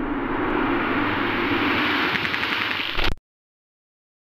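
Old car engine running steadily with a light rattle, cut off abruptly about three seconds in.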